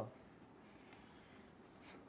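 Near silence with faint scratching of pens writing on paper.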